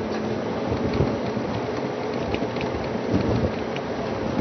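Lions fighting: irregular low rumbling growls over a steady noisy hiss.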